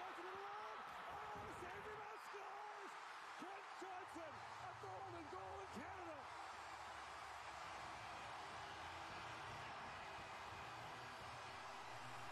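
Arena crowd erupting in cheers at an overtime winning goal, with excited shouting over the top for the first several seconds; the cheering settles into a steady roar with a low steady hum under it.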